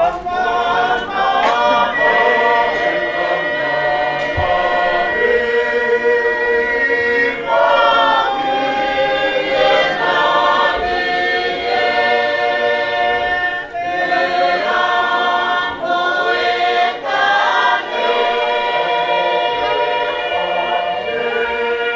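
A congregation of many voices singing a hymn together unaccompanied, in long held notes with brief breaks between phrases.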